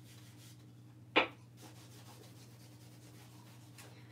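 Fingertips rubbing the paper backing off a wooden sign block in a Mod Podge photo transfer: a faint, scratchy rubbing, with one brief louder sound about a second in.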